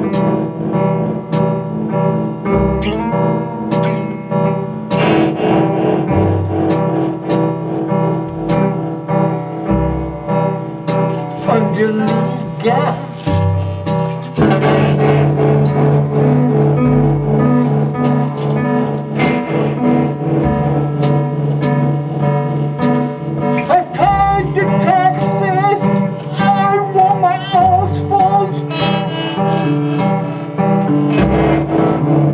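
A band playing live in a small rehearsal room: electric guitars through amplifiers over a regular beat. About halfway through the music settles onto a held low note, and wavering high guitar tones come in near the end.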